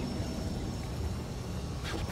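Steady low rumble and hiss of wind and choppy water around a small boat on open water.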